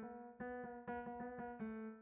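Pianoteq software piano, a modelled Steinway D, playing one note around A3 over and over, about four times a second. It retriggers as the note's detune is dragged, so each repeat lands a few cents higher or lower: a microtonal pitch bend heard in steps.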